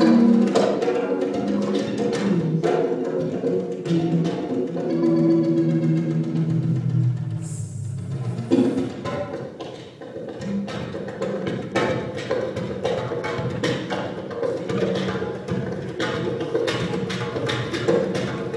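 Live instrumental music from an oud, electric bass and percussion trio: held low notes under frequent struck percussion and drum hits.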